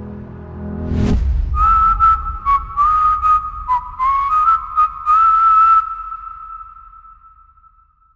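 The backing music's held piano and string chord cuts off with a sharp hit about a second in, then a whistled melody with audible breath follows as the track's outro, ending on a long note that fades out.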